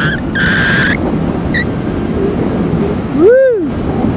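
Wind rushing over the camera microphone during a parachute descent under an open canopy, a steady rough noise. A thin high whistling tone sounds briefly near the start, and a little over three seconds in a voice lets out a short call that rises and falls in pitch.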